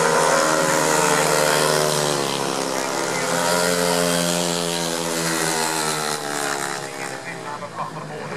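Speedway motorcycles' 500 cc single-cylinder methanol engines racing past at full throttle around the oval. The engine note climbs and then falls away, getting quieter in the last couple of seconds.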